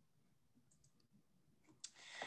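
Near silence with a few faint, brief clicks, three close together about three quarters of a second in and another just before the end.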